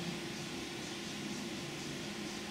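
Steady hiss of room ventilation with a faint, even hum underneath.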